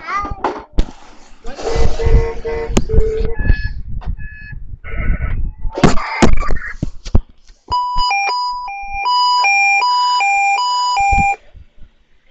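Knocks, bumps and rustling from the phone being handled close to the microphone, with brief vocal sounds from a child. Then, near the end, an electronic beeping tune plays for about three and a half seconds, stepping back and forth between two pitches, and cuts off suddenly.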